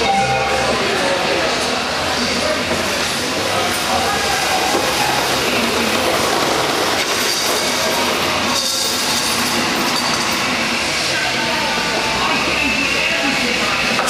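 Home-built self-balancing electric skateboard rolling over brick paving: its wheel and drive motor make a steady rumble.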